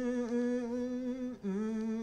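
A man humming a slow tune with his mouth closed: long held notes, the pitch stepping down about one and a half seconds in.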